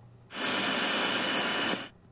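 FM radio static hissing from a 2Boom BT488 Bluetooth speaker in radio mode, steady for about a second and a half, with a faint high whine on top; it cuts off suddenly just before the end.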